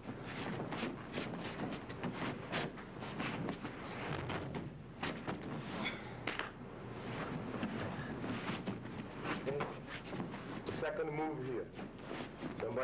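Two people in jiu-jitsu gis scuffling and going down onto a mat during a full-speed takedown: repeated short thumps, shuffling feet and gi fabric rustling.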